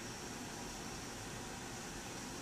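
Small, well-worn Mabuchi brushed DC hobby motor running steadily at about 3,700 RPM on a single cell's power, a faint even whir under hiss.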